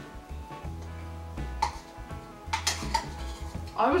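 A metal spoon clinking against a ceramic bowl a few times during eating, over background music with a low bass line.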